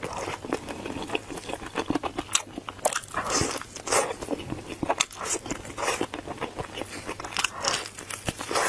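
Close-miked eating of sauced fried chicken wings: crunchy bites of the fried coating every second or so, between them chewing.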